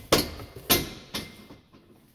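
Metal swing-out saddle rack being swung out and clanking: two loud knocks about half a second apart, then a lighter one.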